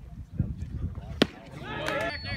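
A single sharp crack of a baseball bat hitting a pitched ball about a second in, followed by voices calling out.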